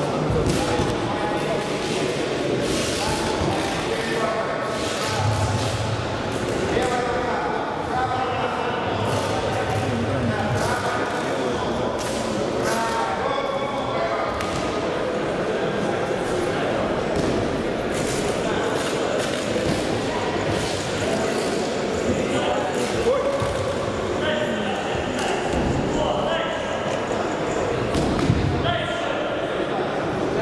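Several overlapping voices calling out in a large echoing hall, with occasional thuds of fighters grappling on the ring mat.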